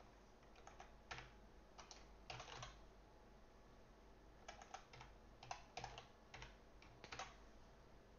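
Faint computer keyboard typing in short bursts of keystrokes, with a pause of about a second and a half in the middle.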